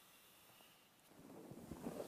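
Near silence: room tone, with a faint soft rustle and a few light ticks building in the second half.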